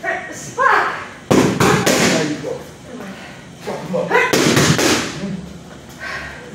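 Boxing gloves punching focus mitts: sharp smacks in two quick flurries, about four strikes just over a second in and another four or so past the four-second mark.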